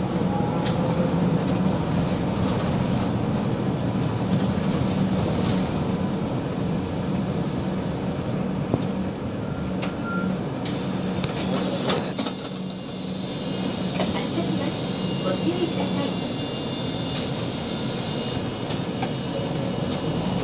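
City bus running along the road, heard from inside at the front: a steady engine hum with road noise. A sharp hiss lasts about a second, a little past halfway through.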